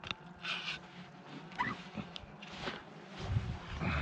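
Water splashing and sloshing in short bursts as a metal bank stick is worked into the lakebed beside an inflatable boat, with a brief squeak about a second and a half in and low knocks and rumbles near the end.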